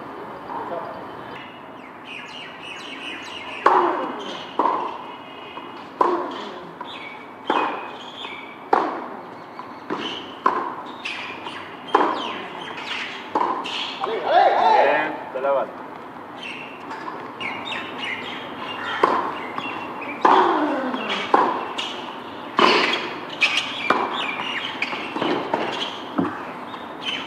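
Tennis rally on a hard court: racquets strike the ball and it bounces, a sharp hit every second or so. A voice rises briefly about halfway through, and birds chirp faintly.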